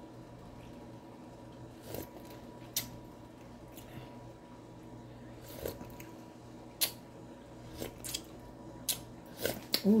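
Small clicks and smacks of someone tasting soup broth, a handful spaced a second or so apart and coming quicker near the end, over a steady low hum.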